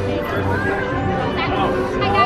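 Several people chatting, their voices overlapping, with music playing in the background.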